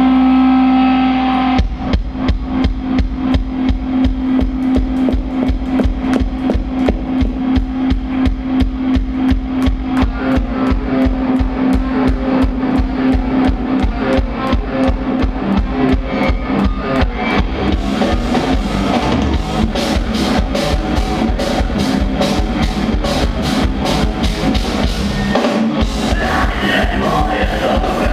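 Live metalcore band playing the instrumental opening of a song. A held guitar note rings alone, then about a second and a half in the drum kit comes in with a fast, steady kick-drum beat, about four strikes a second, under heavy guitars and bass. The sound grows brighter about eighteen seconds in.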